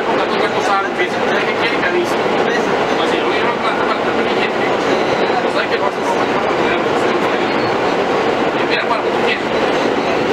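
R160A subway car in motion, heard from inside the car: a loud, steady rumble of the wheels on the rails and the car body.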